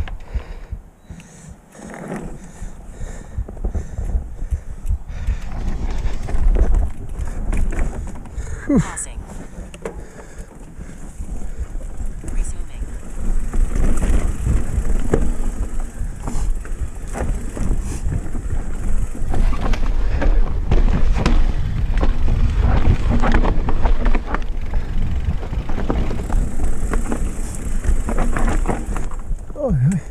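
Electric mountain bike ridden over rocky singletrack: a continuous low rumble of wind and tyres with a dense run of knocks and rattles from the bike jolting over loose rocks. It is quieter at first and grows busier and louder from about halfway.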